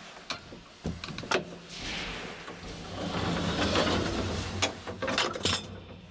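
Old ASEA traction elevator starting off: a few sharp clicks of the car button and control relays, then the steady low hum of the hoist motor as the car travels, with more sharp clicks near the end.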